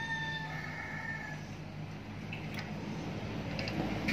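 A rooster crowing, its call tailing off about a second and a half in, followed by a few light metal clicks of engine parts being handled.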